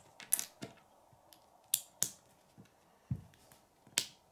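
Small plastic Lego pieces being handled and pressed together, giving a scattered series of short sharp clicks, with a duller knock about three seconds in.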